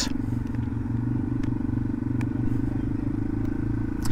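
Yamaha TW200's air-cooled single-cylinder four-stroke engine running at a steady, even speed while the bike is ridden along.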